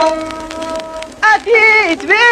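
Old recording of Souss Amazigh rrways music: a bowed ribab holds one steady note, then about a second in a man's singing voice enters with wavering, ornamented pitch. A crackling surface noise runs under the held note.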